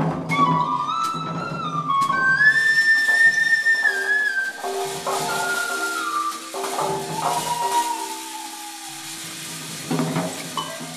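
Small wooden flute played live into a microphone: long held notes that bend and slide in pitch, over lower sustained notes. A few percussion hits in the first couple of seconds.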